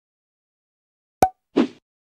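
Sound effects on an animated logo: a sharp pop with a brief ring about a second in, then a short plop-like burst half a second later.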